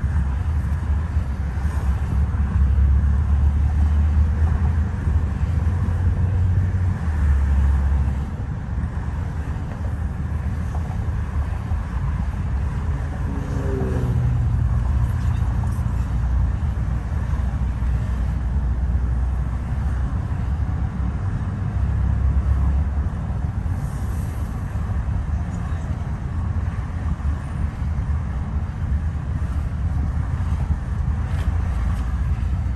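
Road noise inside a car's cabin at highway speed: a steady low rumble of tyres and engine, with a brief falling tone about halfway through.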